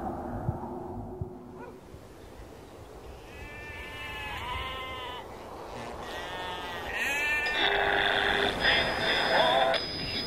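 Livestock bleating: two long wavering calls, followed by a louder, steadier sound with a held high tone.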